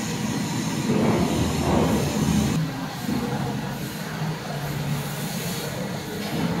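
Steady low mechanical rumble of machinery running, louder in the first half and easing slightly about halfway through.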